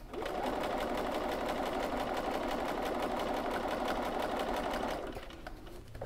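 Bernina sewing machine running a straight seam at a steady speed, its needle strokes coming fast and even; it starts just after the beginning and stops about five seconds in.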